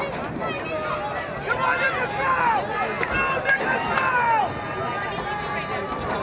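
Spectators shouting and cheering, many voices overlapping at once, louder from about one and a half seconds in until past four seconds.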